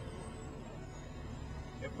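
Diesel engine of a 2012 Kenworth T800 tractor, a Cummins, running with a steady low rumble heard from inside the cab as the unloaded rig rolls off slowly.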